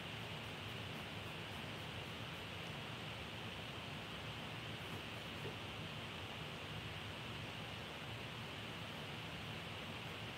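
Quiet, steady hiss with a faint low hum underneath: room tone with no distinct sounds.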